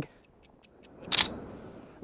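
Canon DSLR on self-timer: a quick run of short high ticks, about eight a second, then the shutter fires a little over a second in.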